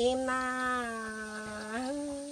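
A woman singing khắp, Thái folk song, drawing out one long held note that rises slightly in pitch near the end.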